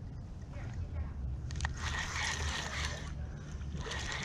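Spinning fishing reel being cranked, a steady whirring that starts about a second and a half in after a click, as line is wound in, over a low rumble of wind on the microphone.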